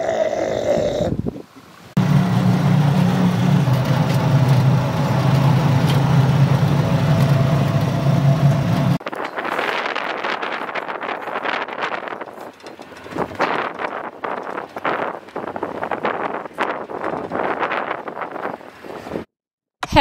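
Engine of an open-top safari vehicle running with a steady low hum for several seconds. About nine seconds in it gives way to uneven rushing noise of wind buffeting the microphone.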